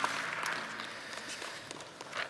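Congregation applauding, a dense patter of clapping that thins out and fades over the two seconds.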